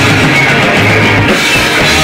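Punk rock band playing live and loud: electric guitars and a drum kit.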